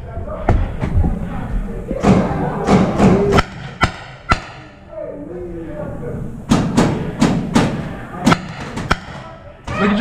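Paintball gunfire in close quarters: a dozen or more sharp, irregular pops and thuds of markers firing and paintballs smacking hard surfaces, coming in clusters with a lull about halfway through. Faint shouted voices are heard in the background.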